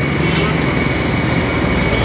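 A vehicle engine idling steadily with a fast low pulsing, under a constant faint high whine.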